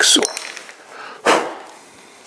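Two brief handling noises: a sharp click at the start, then a longer rustle just over a second in, as a wooden pin tool is put down on the table and a leather-hard clay bowl is lifted off its foam sponge.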